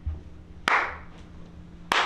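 One person giving a slow clap: two single hand claps about a second apart, each with a short echo.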